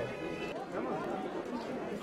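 Background chatter of a street crowd: many voices talking at once, steady and fairly quiet.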